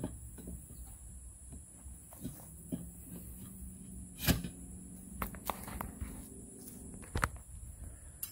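Scattered knocks and clunks of a deer feeder's leg extension tubes being pushed into place on its legs, a friction fit; the loudest knock comes about halfway through.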